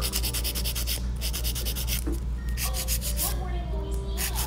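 A half-moon nail file rubbed briskly back and forth across a long artificial nail to shape it: quick scratchy strokes, about ten a second, in short runs with brief pauses between them.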